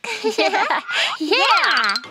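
Excited cartoon children's voices exclaiming, with swooping pitch, rising into a cheer of 'yay'.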